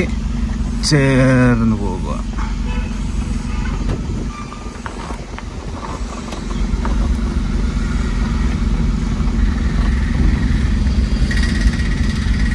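Small car's engine running steadily at low revs as the car creeps along in low gear, heard from inside the cabin; it eases off briefly about four seconds in, then picks up again.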